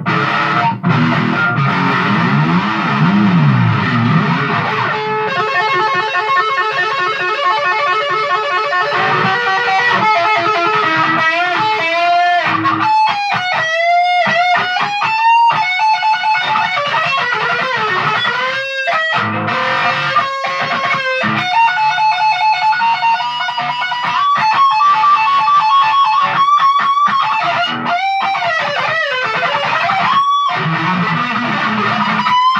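Electric guitar played on its own. It opens with about five seconds of low riffing, then moves into fast repeated runs and lead lines with rising string bends and long held notes with vibrato.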